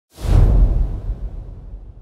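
Logo-intro whoosh sound effect with a heavy bass: it comes in sharply just after the start and fades away over about a second and a half.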